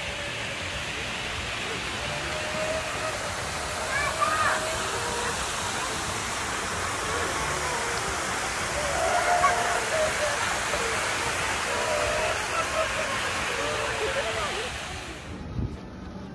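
Water from an artificial rock waterfall pouring into a swimming pool: a steady rushing hiss that stops suddenly near the end, with faint distant voices over it.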